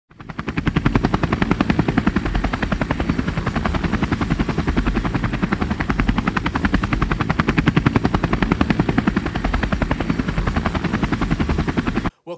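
Loud, fast, evenly repeating mechanical chopping pulse with a thin steady high whine above it; it builds up in the first half second and cuts off abruptly at the end.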